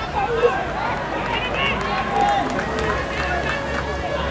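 Scattered shouts and calls from players and onlookers across an open cricket ground, with no clear words, over a steady low outdoor rumble.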